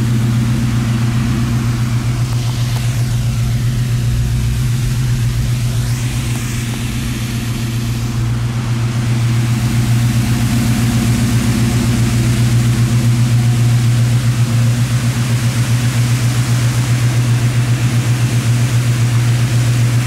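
The V8 engine of a classic Chevrolet Chevelle idling steadily, with an even low exhaust pulse. It grows a little louder in the second half.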